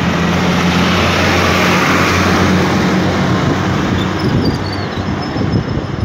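A large road vehicle passing close by: a steady low engine drone under a rushing noise that swells about two seconds in and then eases off.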